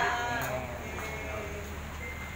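A drawn-out, wavering voice call trailing off and falling in pitch in the first half-second, then a quiet room hum with faint voices.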